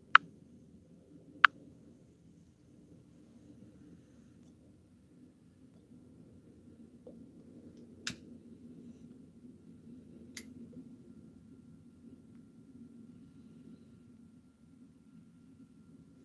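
A tobacco pipe being relit with a match: a few sharp clicks of handling, then faint low draws on the pipe as the flame is pulled into the bowl.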